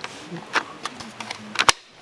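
Plastic clicks and light rattling of a slide-on battery pack being worked onto a cordless circular saw, about five clicks with a louder one near the end.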